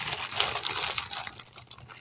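Plastic packaging crinkling and rustling as it is handled, a run of small irregular crackles.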